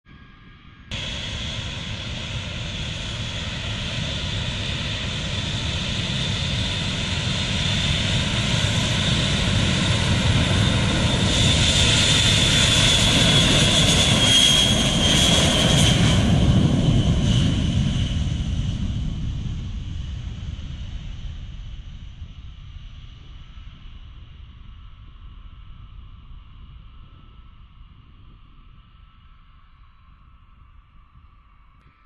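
Jet engines of a US Air Force B-52H Stratofortress bomber (eight turbofans) at takeoff power. The roar starts suddenly about a second in and swells, with a high whine at its loudest as the bomber rolls past. It then fades steadily as the bomber climbs away.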